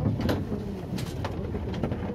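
Low, steady rumble inside a Siemens ULF A1 low-floor tram rolling slowly, with a handful of sharp clicks and rattles.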